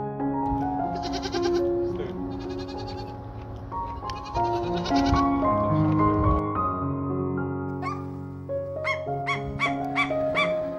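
A goat bleating three times, each bleat under a second and quavering, the last and loudest about four and a half seconds in. A few short rising bird calls follow near the end.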